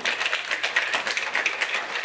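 A plastic shaker bottle of drink being shaken hard by hand, with the liquid sloshing and clattering inside in a rapid run of strokes.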